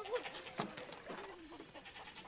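Goat bleating, a wavering call at the start and a fainter one about a second in, over a low murmur of voices.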